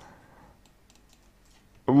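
A quiet pause with a few faint clicks of a computer keyboard. A man's voice starts near the end.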